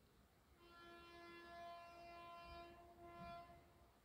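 Train horn heard faintly, one long steady blast of about three seconds with a brief dip near the end before it carries on a little longer.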